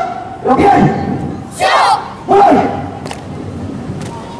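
A troop of students shouting drill calls together, three loud shouts within about two seconds, the middle one the highest-pitched and loudest.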